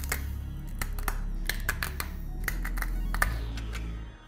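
Background music with a steady low bass, over repeated small sharp clicks and snaps of 3D-printed plastic support material being broken out of a print by hand.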